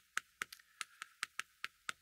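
Chalk tapping against a chalkboard as characters are written: about ten faint, short clicks in quick, uneven succession.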